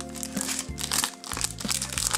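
A clear plastic document sleeve crinkling as it is handled, in irregular crackles. A background music track with long held notes plays under it.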